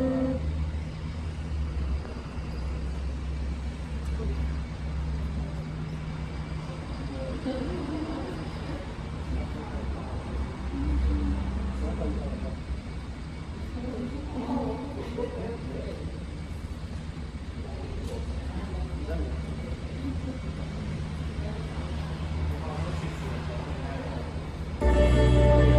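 Low, steady rumble of road traffic, with faint voices talking quietly now and then.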